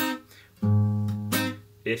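Steel-string acoustic guitar being fingerpicked. A short percussive click at the start, then a low bass note plucked about half a second in and left ringing, cut across by a sharp hit on muted strings just before it fades.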